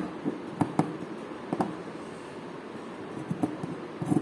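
Tailor's scissors snipping through cotton cloth, trimming off an excess triangle at a seam: a few short, sharp snips, most of them in the first two seconds.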